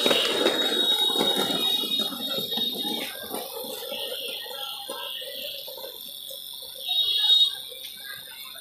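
Handheld tattoo machine running with a steady high-pitched whine, swelling louder for about half a second near the end. Background voices murmur underneath.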